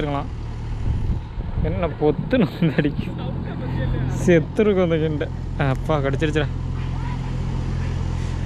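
People talking in short spurts of speech, over a steady low hum that runs throughout.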